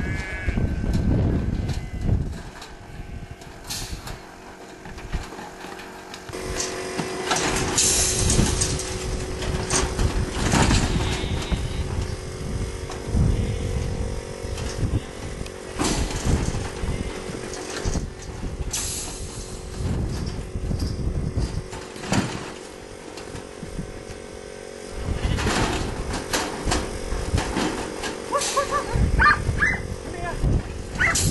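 Sheep being handled through a metal sheep weighing and drafting crate: irregular knocks and rattles of the crate and its gates, with a steady hum from about six seconds in. A sheep bleats near the end.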